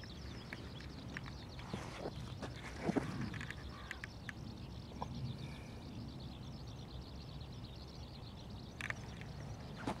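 Faint outdoor ambience in open farmland: a low steady rumble with scattered small clicks, and a brief call falling in pitch about three seconds in.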